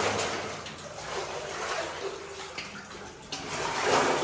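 Footsteps wading through shallow, muddy water on the floor of an old mine tunnel, with water sloshing and splashing around the legs.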